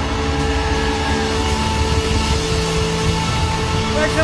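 Live rock band holding a closing chord: sustained guitar tones ring steadily over drums and cymbals.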